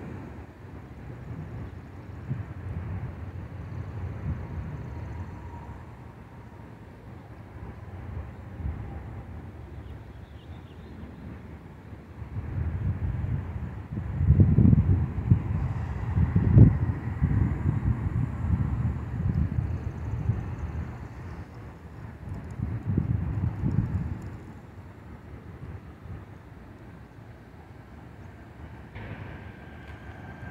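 Low outdoor rumble of wind on the microphone and road traffic, swelling loudest about halfway through as a car drives past, with a smaller swell a little later.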